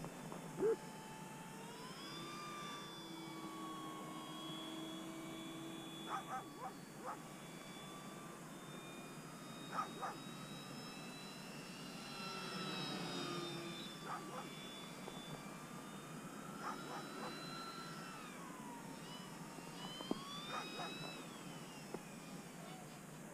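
Distant RC plane in flight: the whine of its brushless electric motor and 13x6 four-blade propeller, its pitch rising and falling several times with throttle and passes. A few short sharp sounds break in now and then.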